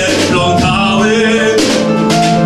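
A song performed live: a voice singing over instrumental accompaniment with steady held low notes.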